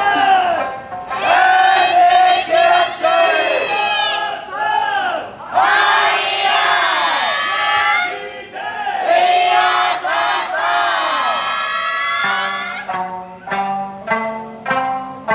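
A troupe of eisa drum dancers shouting hayashi calls together: short, loud cries in quick succession, some falling in pitch. Near the end a plucked-string melody comes in.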